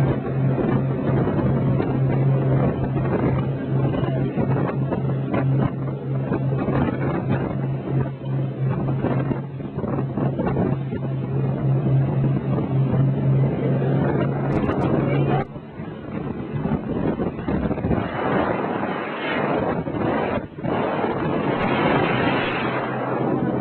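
Speedboat engine running at speed with a steady low drone under the rush of water and spray and wind on the microphone. About two-thirds of the way through the engine tone drops away, leaving the rushing water and wind.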